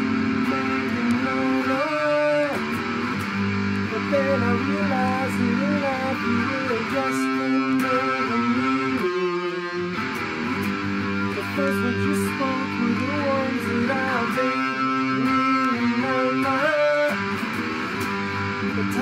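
Electric guitar being played, chords and held notes ringing with some notes bending in pitch.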